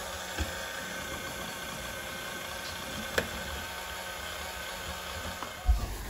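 Electric stand mixer running steadily, its beaters creaming butter and brown sugar in a stainless steel bowl, with a single click about three seconds in.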